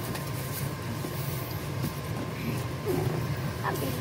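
Steady low hum of room noise, with faint sounds of a kitchen knife cutting around the stem of a pumpkin.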